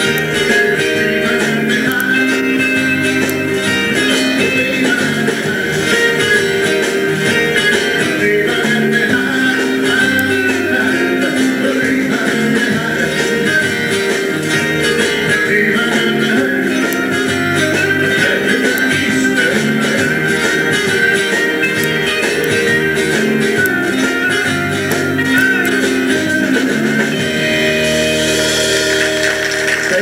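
Live country band playing, with guitar to the fore over drums, bass and keyboards. Near the end the song closes on a held final chord with a cymbal wash.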